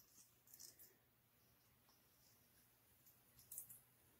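Near silence: room tone, with a few faint light clicks of handling on the table about half a second in and again near the end.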